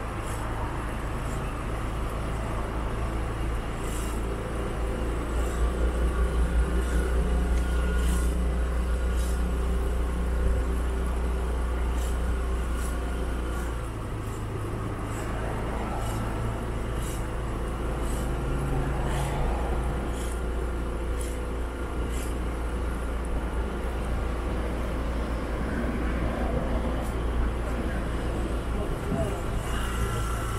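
Road traffic on a multi-lane street, vehicles passing steadily, with a heavy low rumble through the first half that eases about halfway through.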